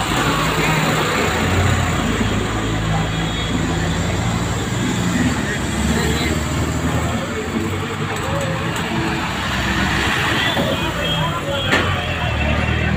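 Street traffic, with a diesel city bus engine running close by under the voices of people around street-market stalls. The low engine hum holds steady throughout, and there is one sharp click near the end.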